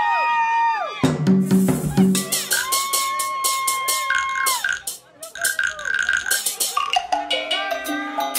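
Live electronic music from a keyboard synthesizer: sliding high notes, then about a second in a drum beat and bass line start, with held synth notes over them.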